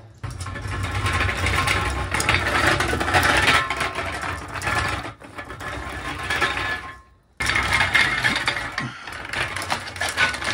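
Caster wheels of an empty steel motorcycle dolly rolling over rough, pitted concrete, making a continuous rattling, gritty clatter. The clatter is the sign of a floor so rough that the dolly does not roll smoothly. It breaks off abruptly for a moment about seven seconds in, then resumes.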